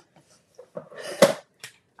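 Plastic cutting plates of a die-cutting machine being handled. There is a sharp clack about a second in and a lighter click soon after.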